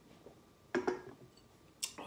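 A glass beer mug set down on a wooden board: a short knock about three-quarters of a second in, then a sharp click near the end.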